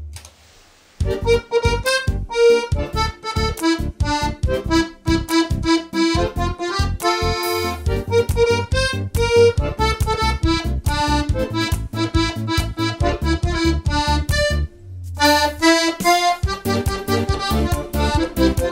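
Piano accordion playing a disco polo song solo: a treble-keyboard melody over a regular, evenly pulsing bass and chords. The playing breaks off for about the first second, and breaks briefly again around fifteen seconds in.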